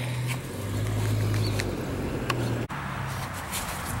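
A low steady hum, like a motor running nearby, under faint outdoor background noise and a few light clicks; it breaks off abruptly about two-thirds of the way in.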